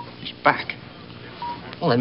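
Short electronic beeps at one steady pitch, about a second and a half apart, with a brief burst of voice about half a second in; the sound is thin, as if heard over a phone line.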